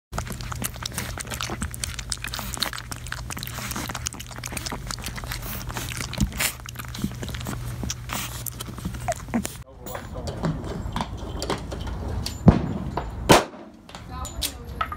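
A puppy lapping milk from a bowl: quick wet clicking laps over a steady low hum. About ten seconds in, the sound changes abruptly, and two sharp knocks follow near the end.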